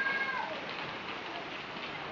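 Steady rushing and splashing of water from the pools and water slide, with a faint high-pitched call in the first half second that falls in pitch.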